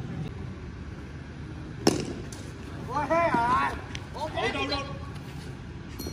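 A single sharp crack of a cricket bat striking a tape ball, about two seconds in, followed by players shouting excitedly.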